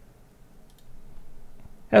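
A quiet pause with faint room tone and a few soft clicks about two-thirds of a second in, before a man's voice starts again at the very end.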